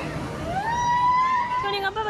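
A long high-pitched scream that rises, holds and then falls away, over the voices of a crowd. It comes from riders on a swinging, spinning disc thrill ride.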